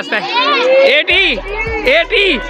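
Children's voices chattering and calling out together, with background music whose low bass comes in about a second in.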